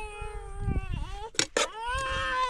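A cat meowing in long, drawn-out calls, one dipping in pitch about a second in and another starting near the end. Two sharp clinks come about a second and a half in.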